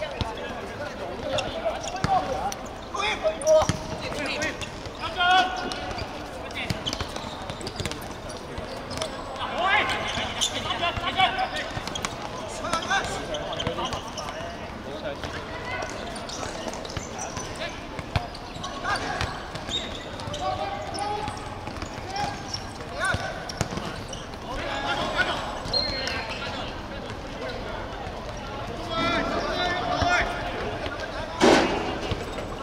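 Footballers shouting and calling to each other across an outdoor pitch, with scattered sharp thuds of the ball being kicked.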